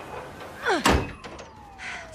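A quick downward-sliding whoosh ending in one heavy slam just before a second in, followed by a thin tone that slowly falls in pitch.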